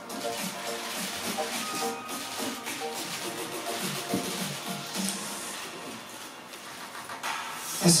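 Soft background music playing in a hall, with faint voices and a few faint camera shutter clicks.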